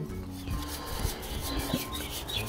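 Plastic threads of a swing-joint fitting rasping as it is twisted into the base of a Hunter Pro Spray sprinkler head, with background music underneath.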